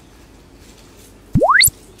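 A single synthetic tone sweeping rapidly upward from very low to very high pitch, lasting about a third of a second a little past the middle: an edited-in rising sweep sound effect.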